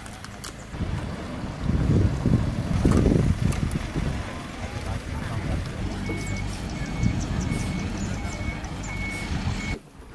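Truck engine running, loudest a couple of seconds in, then a reversing alarm beeping at one steady pitch about twice a second from about six seconds in. Everything drops away suddenly just before the end.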